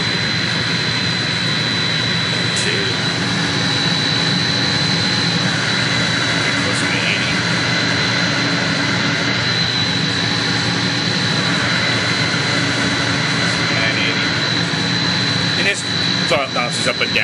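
Water booster pump motor and its Fuji FRENIC-Eco variable frequency drive running, the drive varying the pump speed to hold the building's water pressure. A steady mechanical drone with a steady high whine above it; a lower hum comes in about three seconds in.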